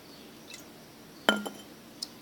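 An amber glass bottle clinks once, sharply, with a brief ring, a little past halfway, after a faint tick earlier.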